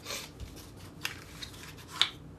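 A deck of tarot cards being handled on a wooden table: a brief rustle of cards sliding and rubbing at the start, a light tick about a second in, and a sharp snap of cards at the end.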